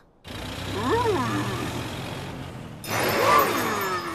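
Cartoon sound effect of a small bus driving: a steady engine hum under a noisy rush, with two rising-and-falling swoops, one about a second in and a louder one near three seconds in.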